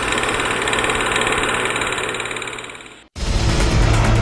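A fast mechanical rattling-whirring sound effect under a title card, like a film projector running. It fades out and cuts to silence about three seconds in. Then a music theme starts with deep sustained tones.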